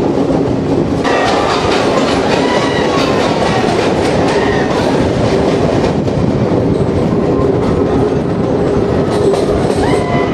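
Passenger train running on jointed track, heard from an open window or door: a steady rumble with clickety-clack of the wheels. From about a second in, a thin squeal of wheels on the curve rises and falls over it.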